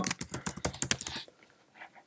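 Typing on a computer keyboard: a quick run of key clicks for about the first second and a quarter, then it stops.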